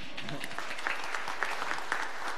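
Congregation applauding: many people clapping at once, steady throughout.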